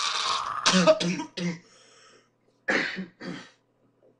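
A young man laughing hard: a breathy stretch, then three quick bursts of laughter about a second in, and two more short bursts near three seconds.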